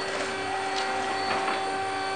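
Linde L12 LAP electric pallet stacker driving, its electric drive giving a steady whine. A higher tone joins about half a second in.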